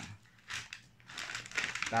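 Brown paper bag rustling and crinkling as it is handled: a short crinkle about half a second in, then more crinkling building near the end.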